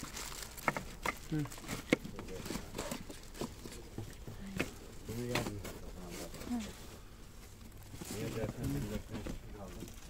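Handling noise: several sharp clicks and taps, the loudest about two seconds in, with scattered lighter ticks after. Low voices talk quietly around the middle and near the end.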